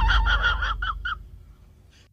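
A quick run of about eight short, pitched calls in the first second, with a low rumble under them, fading out to near silence near the end.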